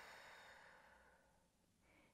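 A woman's slow, faint exhale through pursed lips, as if breathing out through a straw, fading out about a second and a half in. It is a demonstration of calming pursed-lip breathing.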